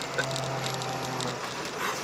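Car engine idling, heard from inside the cabin as a steady low hum that fades out about a second and a half in. A short laugh comes right at the start.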